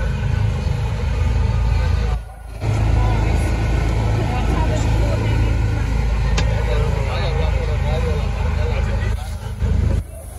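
Motorboat under way: a steady low rumble of the motor with wind on the microphone and voices in the background. The sound drops out briefly about two seconds in.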